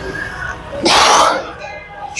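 A man's forceful burst of breath out through the lips under the strain of a heavy bench press rep, spraying spit: one loud puff about half a second long, a little under a second in.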